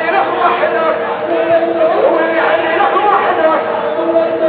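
Several voices talking and calling over one another, with a few held, sung notes among them.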